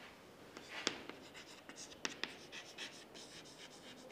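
Chalk writing on a chalkboard, faint scratching strokes with a few sharper taps of the chalk, about a second in and twice around the middle.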